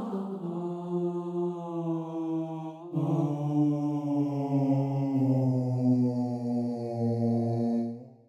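A low, sustained drone on one held pitch with a rich set of overtones. It steps down to a lower held pitch about three seconds in.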